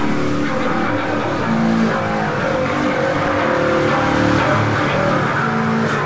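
Loud distorted electric guitar and bass droning through amplifiers, their held notes shifting in pitch every second or so, with little drumming until near the end.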